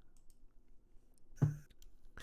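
A pause in a man's speech, filled with faint mouth clicks and a brief voiced sound about one and a half seconds in.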